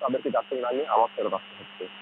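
A man speaking in a live field report, with a steady low hum under the voice; the speech breaks off briefly after about a second and a half.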